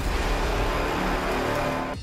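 A steady rushing noise over a low rumble that starts abruptly on a cut and eases slightly near the end: an edited-in sound effect.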